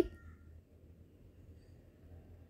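Near silence: faint low room noise, just after a woman's voice breaks off at the very start.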